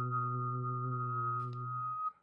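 A person whistling a high note while singing a low note at the same time, both held long and steady together. The sung note stops at the end, and the whistle a moment after.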